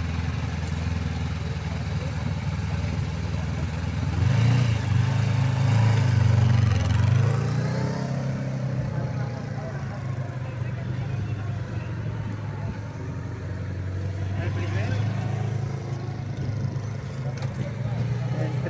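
Honda CB500F parallel-twin engine idling, then pulling away about four seconds in with the engine note rising. It then runs at low speed, rising and falling in pitch with the throttle through slow cone manoeuvres, fainter as the bike moves away.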